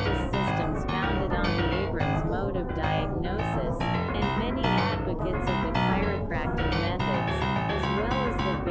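Experimental electronic music: a dense stream of short synthesizer keyboard notes, several a second, over a steady low drone, with some notes sliding in pitch.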